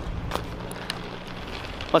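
A steady low hum with a faint hiss and a few light clicks from a handheld camera being moved about. A man's voice starts a word at the very end.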